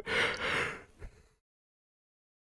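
A man's breathy exhale into a close microphone, like a sigh or a breath of laughter, fading out over about a second, followed by dead silence.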